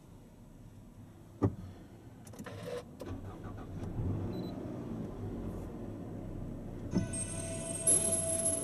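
Car engine being started: a click, a brief crank, then the engine catches about four seconds in and settles into a steady idle. Near the end another click, and the in-car audio/navigation unit powers on with steady electronic tones.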